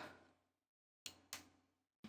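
Near silence with two faint computer clicks about a second in, a quarter second apart.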